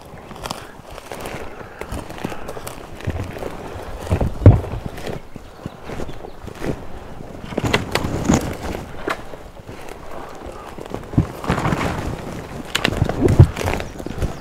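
Footsteps crunching through dry leaf litter and brush, with twigs snapping and branches scraping past. The steps are irregular, with a few louder knocks and bumps along the way.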